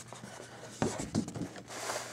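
A stiff paper brochure being handled and turned over on a table: paper rustling and sliding, with two soft bumps near the middle.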